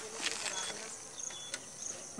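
Insects chirping: short high-pitched chirps repeating over a steady high hiss, with a few soft clicks.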